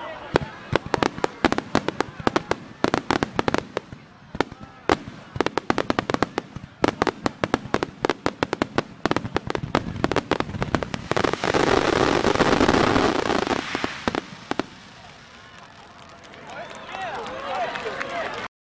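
A fireworks display barrage: dozens of aerial shells bursting in rapid succession, sharp bangs coming several a second. About two-thirds through they merge into a couple of seconds of dense, continuous bursting, the loudest part, then die away. Spectators' voices are heard near the end.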